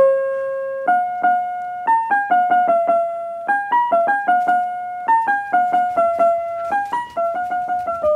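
Piano notes played one at a time by a leaf-touch planter speaker, each touch of the plant's leaves sounding the next note of a built-in tune. The notes come about three or four a second, unevenly spaced, each starting sharply and fading.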